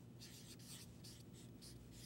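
Faint felt-tip marker writing on a whiteboard, a series of short scratchy strokes.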